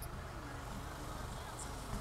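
Wind on the microphone: a steady low rumble.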